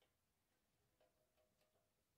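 Near silence with a few faint clicks as the adjustment knob of a music stand is worked by hand.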